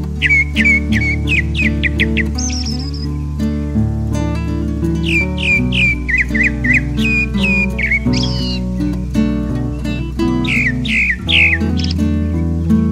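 Grey-backed thrush singing: several phrases of quick, repeated down-slurred whistled notes, over steady background music.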